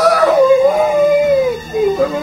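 A woman wailing in grief over a death: one long, high cry that holds its pitch and then falls away near the end.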